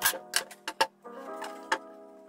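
Kitchen knife cutting through a raw pumpkin and knocking against a wooden cutting board: several sharp clicks in the first second and one more near the end.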